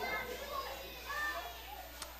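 Faint background chatter: people's voices talking at a distance, low under the room's hum.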